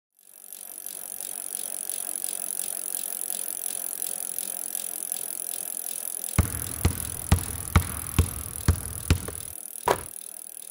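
Road bike riding noise, a steady rush of tyre and wind sound from a handlebar-mounted camera. About six seconds in, music comes in with a heavy beat of about two hits a second.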